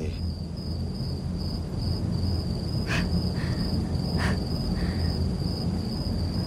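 Crickets chirping, a high pulsing trill, over a low steady rumble, with a few faint short clicks or rustles around the middle.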